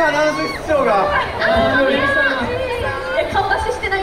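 Speech only: several voices talking over one another into microphones.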